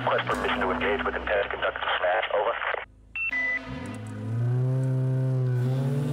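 Thin, radio-like voice chatter that cuts off abruptly about three seconds in, followed by two short high electronic beeps. A low droning tone then slides up and holds.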